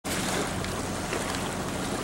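Steady rush of wind and small waves lapping on open lake water, with a faint low hum underneath.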